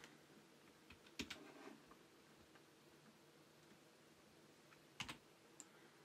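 Near silence with a few faint computer keyboard keystrokes, the clearest about a second in and again about five seconds in.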